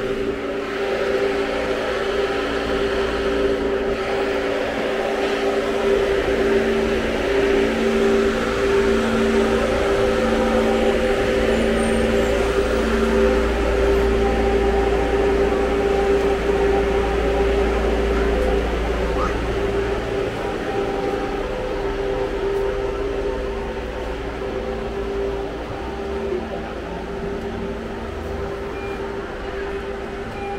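City buses idling at a stop: a steady droning hum with several whining tones, one pulsing on and off, over a low engine rumble that swells for the middle third and then eases.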